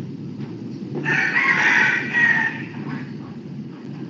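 A single drawn-out animal call, starting about a second in and lasting about a second and a half, over a steady low background hum.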